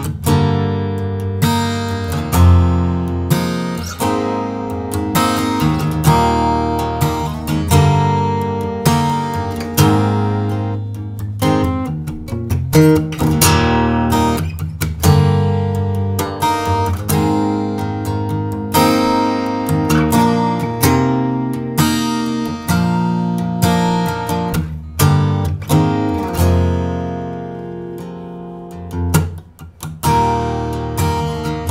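A Gibson J-55 flat-top acoustic guitar, a 1939 model built in 2020, strummed in chords, each strum ringing into the next. The playing pauses briefly near the end.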